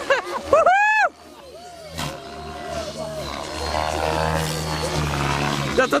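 Electric model helicopter in aerobatic flight; its rotor and motor hum steadily, growing louder over the last few seconds. Loud wavering shouts come in the first second.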